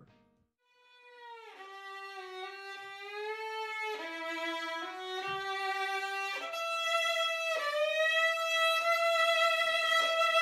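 Solo violin playing a slow melody of long held notes, beginning about a second in with a downward slide into the first note and growing steadily louder.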